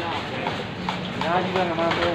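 Voices talking in the background over a low steady hum, with a few knocks from a heavy cleaver chopping through stingray on a wooden block.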